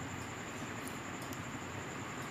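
A few faint clicks from the inline remote button of LeEco CDLA earphones being pressed, about a second in, over a steady background hiss.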